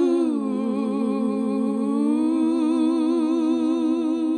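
Wordless voices holding long notes in two-part harmony with vibrato. The pitch dips about half a second in and rises back around two seconds in.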